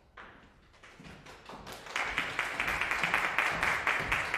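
Audience applause: a few scattered claps that swell into steady full applause about two seconds in.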